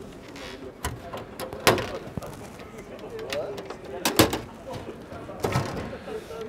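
Toggle latches on an aluminium storage box being unclipped and the lid lifted: a handful of sharp metallic clicks and knocks, the loudest about two seconds in and again about four seconds in, over background chatter.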